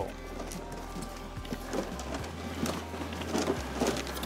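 Paper entry slips tumbling and rustling with irregular light ticks inside a spinning clear acrylic raffle drum, over background music.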